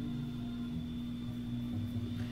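Quiet background music with shifting low notes, over a steady electrical hum.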